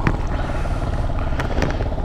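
Small single-cylinder engine of a Chinese Honda XR125-replica supermoto idling steadily while the bike stands still, with a few light clicks.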